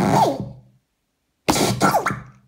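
Circuit-bent talking toy's speaker giving two short bursts of distorted, glitchy electronic sound with falling pitch sweeps, each dying away within about a second; the second starts about one and a half seconds in. The bursts are set off by a plastic mallet striking the toy's pegs.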